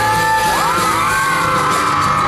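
Live pop band playing: acoustic guitar, bass and drums under a sung lead vocal, with a crowd of fans screaming and cheering over the music.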